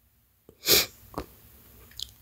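A short, sharp burst of breath from a woman close to the phone's microphone, about two-thirds of a second in, followed by a fainter one about half a second later.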